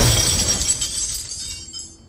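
Gold coins thrown down onto a stone floor: a sudden crash of metal pieces scattering and jingling, the ringing fading away over about two seconds.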